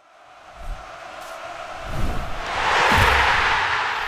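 Outro sting: a crowd roar that swells to a peak about three seconds in and then begins to fade, with a few low thuds under it.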